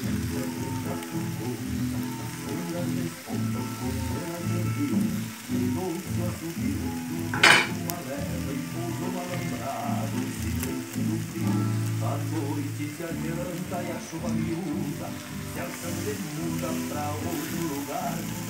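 Beef steaks, onions and bread sizzling on a hot plow-disc griddle (disco), with a piece of bread being wiped through the pan juices. There is one sharp knock about seven and a half seconds in.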